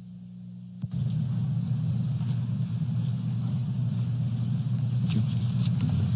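Steady low rumble of a large hall's ambience picked up through open microphones, coming in suddenly about a second in, with a few faint taps and rustles near the end.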